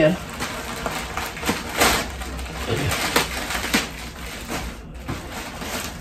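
Plastic mailer bag and plastic-wrapped clothing crinkling and rustling as the package is torn open and the contents pulled out, in irregular bursts, loudest about two seconds in.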